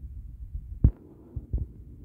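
Low rumbling handling noise with a sharp thump a little under a second in and two softer thumps about half a second later, like a hand-held phone being bumped and shifted while filming.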